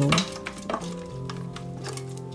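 Chunks of chicken being stirred with a silicone spatula in an air-fryer basket: a few scattered soft knocks and scrapes, under background music of held tones.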